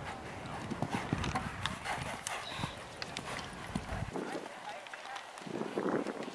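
A horse's hoofbeats on the sand arena footing, irregular at first, as it lands from a jump and canters on, slowing to a trot. A low rumble under them stops about four seconds in.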